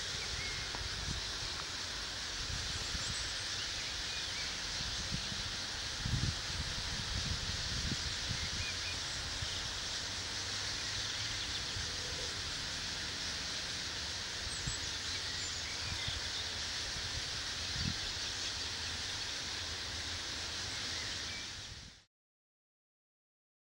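Steady outdoor evening ambience: an even high hiss with a few faint bird calls and occasional low thumps. The sound fades out near the end.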